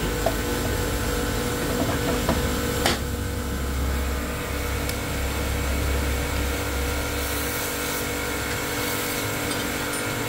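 An aluminium engine side cover being fitted by hand onto a Bajaj Pulsar 180's crankcase, with a single sharp click about three seconds in and a few faint knocks, over a steady low hum.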